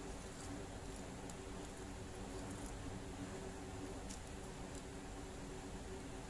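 Soft, scattered ticks and rustles of thread and a metal crochet hook being worked by hand, over a faint steady background hum.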